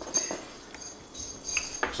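Light metallic clinking and handling clicks as a coiled braided charging cable with metal connectors is gathered up from a cardboard box tray, in two short runs: just after the start and again about a second in.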